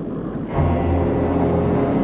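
Steady low aircraft engine drone that swells in sharply about half a second in, mixed with the film's dramatic music score.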